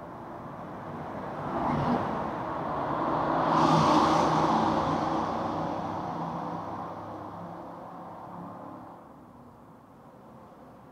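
A motor vehicle passing close by on the bridge's road deck: engine hum and tyre noise swell to a peak about four seconds in, then fade away.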